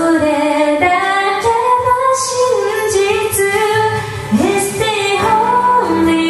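A woman singing a slow Japanese ballad, holding and gliding between long notes, with low keyboard piano notes joining in about halfway through.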